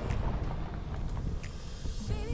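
An SUV driving past close by on a gravel road: a steady low rumble of engine and tyres on gravel, with a few faint ticks.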